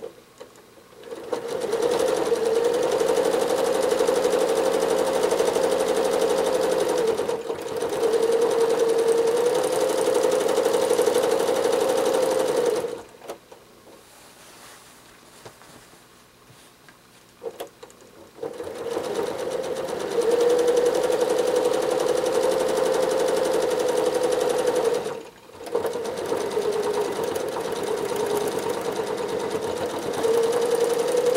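Janome Horizon 7700 sewing machine running at stitching speed for free-motion quilting, its hum wavering slightly in pitch. It stops for about five seconds near the middle, with a few light clicks in the pause, and cuts out again briefly about three-quarters of the way through.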